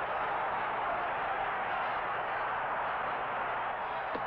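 Steady hiss from an old archival film soundtrack, with a faint low hum, even and unchanging throughout.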